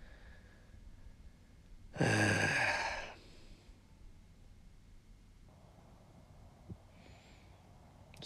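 A man's loud, frustrated groan-sigh, falling in pitch, about two seconds in and lasting about a second, at a missed par putt.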